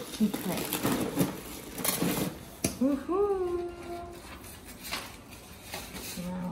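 Rustling and sharp clicks of plastic wrapping being pulled back in a styrofoam box. About three seconds in, a person gives one drawn-out exclamation that rises and then holds.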